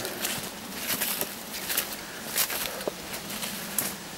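Footsteps in rubber boots pushing through dense undergrowth, with leaves and stems brushing and twigs crackling in irregular bursts.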